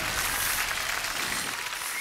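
Studio audience applauding, a dense steady clapping that eases slightly in level.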